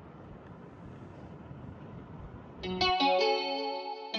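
Faint steady rush of air from a Daikin ceiling cassette outlet blowing hot air in heating mode. About two and a half seconds in it is cut off by louder music: a plucked guitar with a chorus effect.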